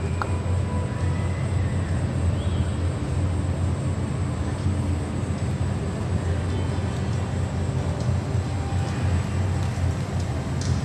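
A steady low rumbling noise with no distinct hoofbeats or other separate sounds standing out.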